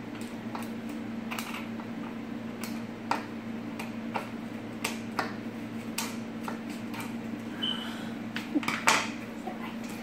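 Child's plastic-handled scissors snipping through paper card: a string of irregular, short snips and clicks, ending in a louder clatter near the end as the scissors are put down on the table.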